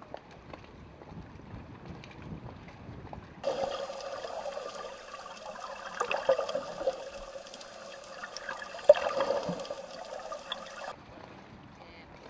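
Water gurgling and sloshing as heard through an underwater camera, with scattered clicks and a sharp knock about nine seconds in. This segment starts abruptly about three and a half seconds in and stops abruptly near the end. Faint water noise at the surface comes before and after it.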